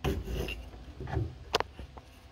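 Wooden door of a plank smokehouse scraping open against its frame, wood rubbing on wood, with one sharp click about one and a half seconds in.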